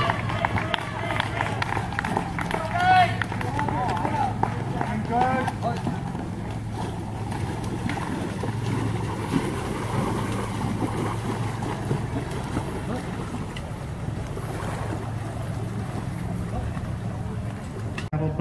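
Voices calling out a few seconds in, then steady outdoor background noise with a low hum and some wind on the microphone.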